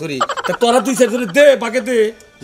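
A man's voice whose pitch swings up and down over and over, several times a second, in short broken runs.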